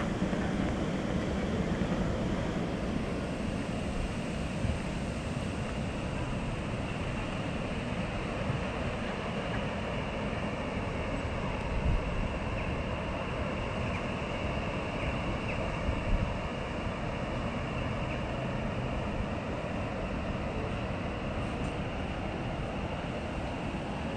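Steady outdoor background noise, a broad rushing sound with a low rumble beneath it, and two brief bumps about halfway through and again a few seconds later.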